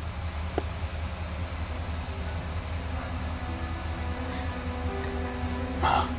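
Steady low rumble of a train standing at a platform, with a soft music score of held notes swelling in from about halfway and growing louder.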